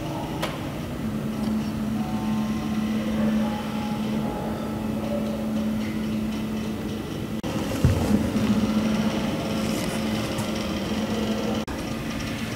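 A filament 3D printer running: a steady motor-and-fan hum with short whining tones from its stepper motors that shift in pitch as the print head moves.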